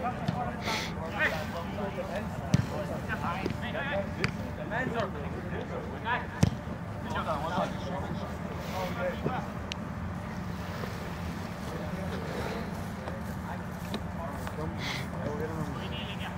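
Soccer players calling and shouting across an outdoor pitch, with two sharp thuds of a ball being kicked, about two and a half and six and a half seconds in, over a steady low hum.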